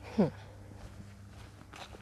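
Faint footsteps over a steady low hum, after a short murmured "hm" near the start.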